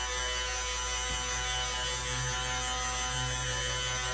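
Handheld stick blender running with a steady motor hum, its head submerged in a stainless steel bowl, blending melted oils into goat's milk and water to emulsify a lotion.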